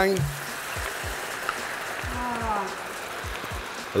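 Mussels frying in a hot pan of olive oil with garlic and onion, just after a splash of white wine has gone in: a steady sizzling hiss with small pops. A short voice is heard about two seconds in.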